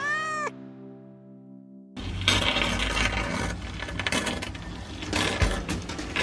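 A cat meows once, rising then falling in pitch. After a short lull with a steady held tone, a busy run of metallic clinks and knocks from tools on tile starts about two seconds in, over background music.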